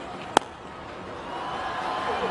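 A single sharp crack of a cricket bat striking the ball, followed by crowd noise that gradually swells as the shot carries towards the stands.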